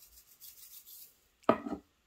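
Faint soft rubbing and tapping from a toy Parmesan cheese shaker being shaken over a toy pizza. About one and a half seconds in, a short loud vocal sound.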